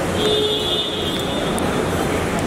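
Busy airport terminal background noise with a steady low hum, crossed near the start by a steady electronic-sounding tone that lasts about a second and a half.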